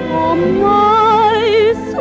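A woman sings a song with orchestral accompaniment, holding one long note with wide vibrato that breaks off shortly before the end, where a new phrase begins.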